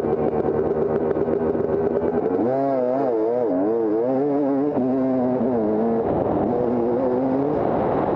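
Off-road dirt bike engine ticking over steadily, then from about two and a half seconds in revving and pulling away, its pitch climbing and dropping several times in quick succession before settling into steadier running as the bike moves off down the trail.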